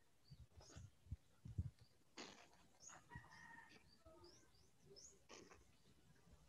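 Near silence with faint bird chirps, short rising notes repeating every second or so, and a few soft knocks.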